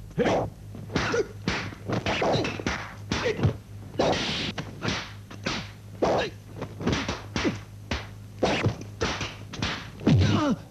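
Wooden fighting staff swung in a kung fu stick fight, giving a rapid, irregular run of sharp whacks and clacks, about two or three a second, as dubbed film sound effects.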